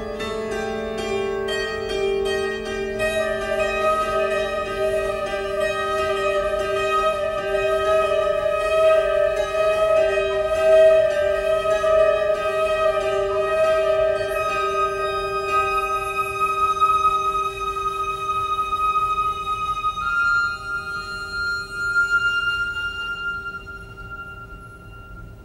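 Contemporary chamber music: a flute holds long sustained notes, changing pitch a few times, over piano strings plucked directly inside a grand piano, with the plucks most marked in the first few seconds.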